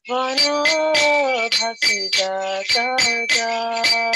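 Devotional kirtan: a voice sings a melody over small hand cymbals (kartals) struck in a steady rhythm, about three strokes a second, their ring sustaining between strokes.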